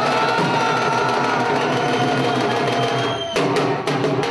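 Dhol drumming, with a long, wavering melody held over a low, steady beat. About three seconds in, loud, sharp dhol strokes come back in.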